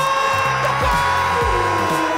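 Football commentators' long, held shout as a goal goes in, their voices sliding slowly down in pitch, over background music with a steady bass beat about twice a second.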